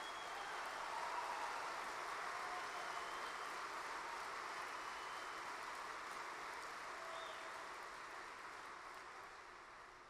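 Large audience applauding: the clapping builds about a second in, holds, then slowly dies away near the end.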